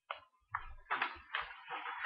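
Paper scrapbook pages rustling and crinkling as they are handled and flipped close to the microphone, in a quick run of rustles with low knocks.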